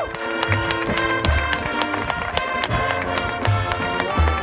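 High school marching band playing: held brass and front-ensemble notes over quick drum strokes, with a low drum hit about every second.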